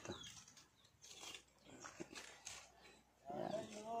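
Quiet stretch with a few faint scattered sounds, then, a little over three seconds in, a rooster starts to crow and carries on past the end.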